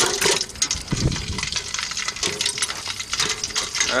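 Steel foothold trap on a chain clinking against the side of a stainless stockpot as it is turned in melted wax, with the liquid sloshing and a heavier knock about a second in. A wood fire crackles under the pot.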